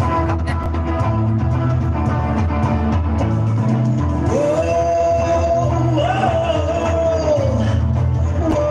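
Live amplified rock band playing: a repeating bass line and electric guitar, with a long held note coming in about halfway that bends slightly in pitch.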